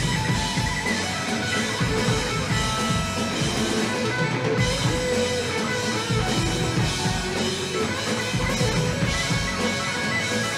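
Live rock band playing: electric guitars, bass guitar and drum kit.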